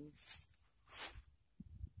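Close handling noise: two short rustles about half a second apart, then a few soft low knocks near the end.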